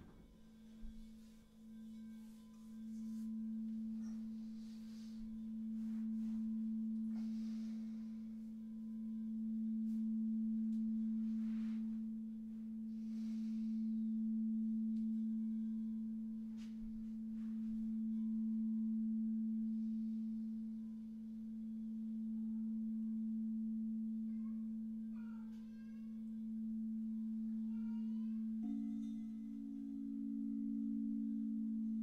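Frosted quartz crystal singing bowl played with a mallet: one long, pure low tone that swells and fades about every four seconds. A second, higher bowl joins in near the end, sounding together with the first.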